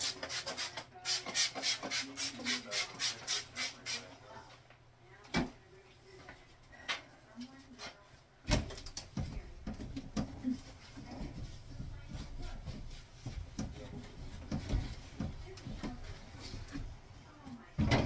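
A trigger spray bottle pumped in a quick run of about a dozen sprays, roughly four a second, at a bathroom mirror. About halfway through, a cloth starts rubbing and wiping the mirror glass and sink counter, with a few knocks.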